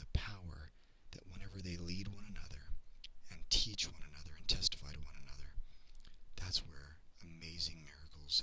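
A man talking: speech only, with short pauses.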